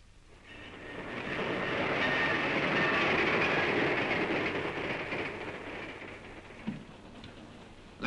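A passenger train running on the rails, passing by: the noise swells over the first two seconds, holds, then fades away by about seven seconds in.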